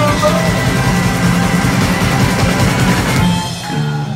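Live rock band playing: electric guitars, bass and drum kit, loud and continuous, dipping slightly in loudness near the end.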